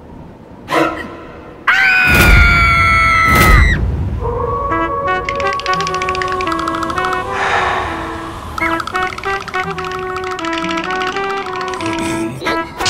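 Cartoon soundtrack: about two seconds in, a loud, shrill held tone over a deep rumble, which cuts off after about two seconds. A music cue of quick repeated notes follows and runs on.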